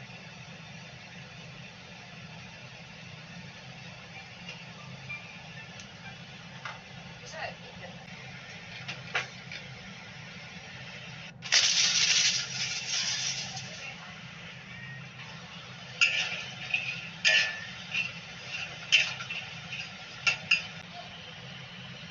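Kitchen frying sounds: a sudden loud hot-oil sizzle about halfway through that fades over a couple of seconds, then a run of sharp metal clinks, a wire strainer and utensils knocking against the wok, over a low steady background hum.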